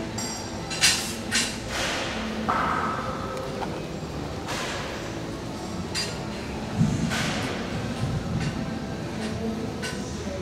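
Weight-room clatter: sharp metallic clanks and clinks of barbell plates and weights, a handful of times over a steady gym background. The loudest clanks come about a second in and again past the middle.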